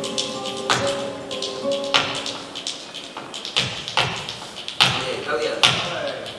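Flamenco dancer's shoes striking the wooden stage floor in single sharp stamps, about one a second and unevenly spaced, the loudest near the end. Flamenco guitar chords ring under the first two seconds.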